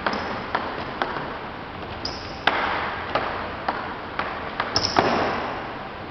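Table tennis ball bouncing: sharp, echoing ticks about twice a second, with a louder hit about two and a half seconds in and a quick flurry of bounces near the end. Two brief high squeaks, like shoes on a wooden floor, come in between.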